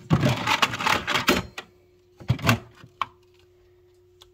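Fire alarm pull stations and a strobe unit knocking and clattering against each other as the strobe is pushed in among them: a dense run of clunks for about a second and a half, then a few more knocks just past the two-second mark.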